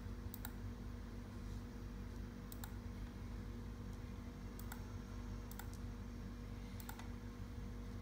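A computer mouse clicking about five times at irregular gaps of one to two seconds, over a steady low electrical hum.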